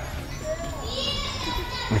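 Children playing and calling in the background outdoors, with one child's high call about a second in that lasts about half a second.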